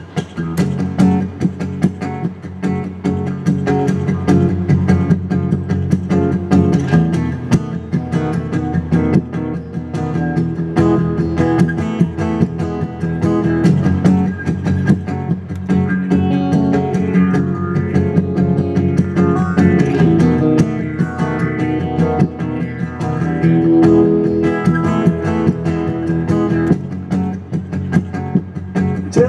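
Guitar playing the instrumental introduction to a song, a steady run of picked notes and chords.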